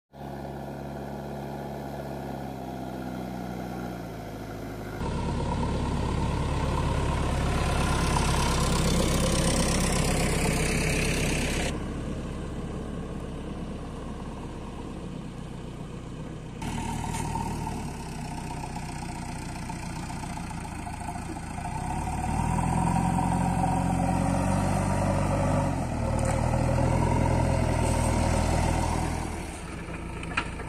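Backhoe loader's diesel engine running and revving, its pitch rising and falling. The sound comes in several takes joined by abrupt cuts, and is loudest in two long spells, one in the first half and one near the end.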